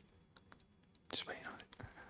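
Faint, off-microphone speech from about a second in, preceded by a few light clicks.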